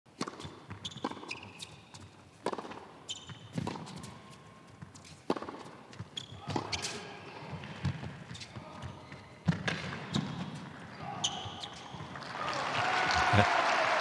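Tennis ball struck back and forth with racquets during a rally on an indoor hard court, one sharp hit every second or so. Near the end the crowd's applause rises as the point finishes.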